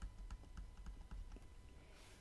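Faint, irregular light clicks and taps of a stylus tip on a tablet surface while handwriting a short line of figures.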